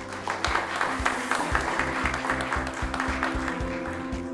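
Audience applauding over background music with a steady beat.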